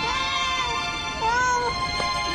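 A cat meowing twice, two short rise-and-fall calls, over sustained orchestral film score.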